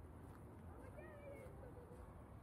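Near silence: faint outdoor ambience with a steady low rumble and a faint wavering call or voice about a second in.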